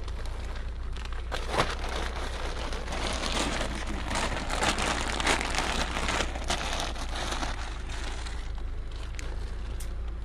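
Continuous rustling and crackling with many scattered sharp clicks, over a steady low rumble.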